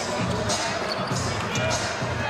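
Basketball game court sound in a large arena: a ball being dribbled on the hardwood over the murmur of crowd and player voices.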